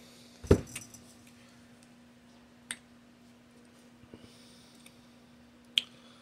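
A boxed tarot card deck being picked up and handled, with a sharp thump about half a second in, then a few faint clicks and taps. A steady low hum runs underneath.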